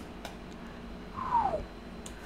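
A cat meowing once, a short call falling in pitch, a little over a second in; a faint click comes just before it.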